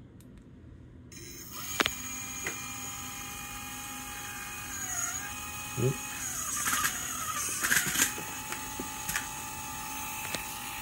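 Small brushless motor of a DIY belt pusher starting up about a second in and spinning with a steady high whine, its pitch sagging briefly a couple of times as a belt is fed through and loads it, with clicks and rattling from the mechanism.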